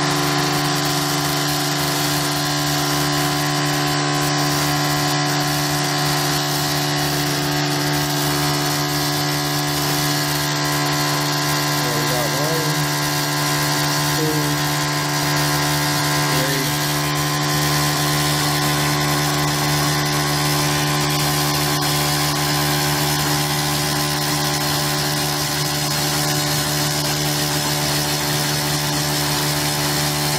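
Small electric motor running steadily and spinning a homemade magnet-and-coil generator, giving a constant, even hum.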